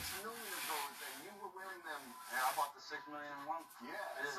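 A hand or object rubbing and sliding across a hard tabletop for the first two and a half seconds or so, under a quiet voice.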